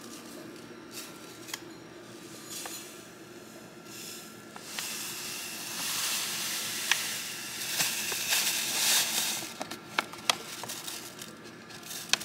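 Ground coffee pouring from a foil-lined bag into a ceramic canister: a soft rustling hiss that builds about halfway through and tails off near the end, with crinkles and clicks from the bag.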